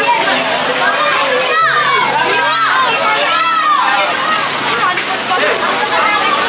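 Street crowd of overlapping voices, with children calling and shouting.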